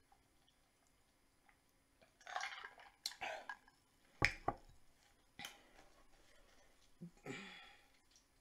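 Soft close-up mouth sounds after a drink: breaths and swallows in a few short bursts, with a single sharp knock about four seconds in as the loudest event. More faint mouth and handling noises follow near the end.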